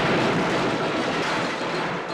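Explosion sound effect: a long, dense blast of noise that slowly fades.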